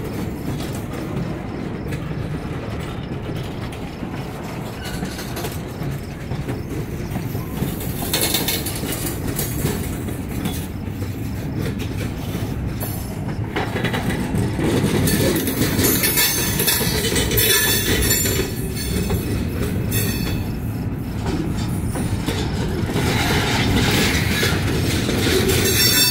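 Freight cars rolling past at close range: a continuous rumble and clatter of steel wheels on rail, growing louder about halfway through.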